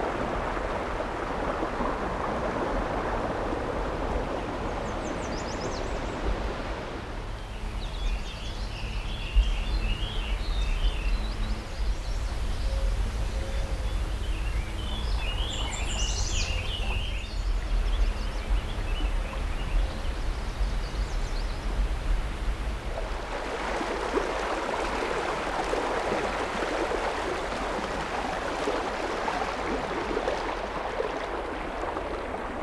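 Rushing water of the Missouri River in flood, a steady broad rush at the start and again near the end. Through the middle the rush drops back under a low rumble, and birds chirp in two short spells.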